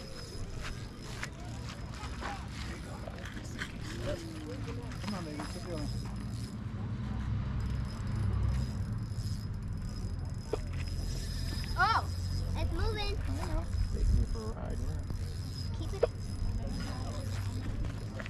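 Indistinct voices of adults and children talking in the background, with a steady low rumble of wind on the microphone and a few faint clicks, the sharpest near the end.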